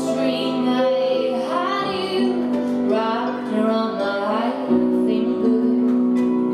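Live music: a woman singing at a keyboard, accompanied by harp, electric guitar, upright bass and cello, with held bass notes that change about two seconds in and again near the five-second mark.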